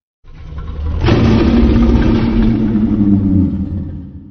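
Godzilla roar sound effect from the 2014 film: a deep, rumbling roar that starts just after the beginning, swells to full loudness within about a second, holds, then begins to fade near the end.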